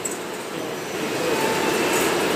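Textile fabric printing machine running, a steady mechanical noise that grows a little louder about a second in.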